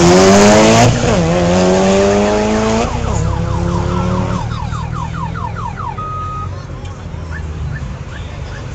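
Street-race cars, including a Subaru Impreza WRX, accelerating hard from a standing start. The engine revs climb through the gears, dropping at shifts about one and three seconds in, and fade after about four seconds as the cars pull away. A quick series of short rising chirps is heard from about three to six seconds, followed by a brief steady beep.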